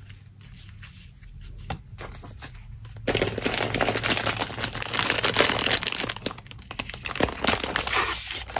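Scrap paper handled close to the microphone: a few light taps, then from about three seconds in a loud, continuous rustling of paper being moved and worked by hand.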